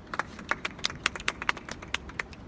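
Scattered hand clapping from a small outdoor crowd: irregular sharp claps, several a second, welcoming a speaker to the microphone.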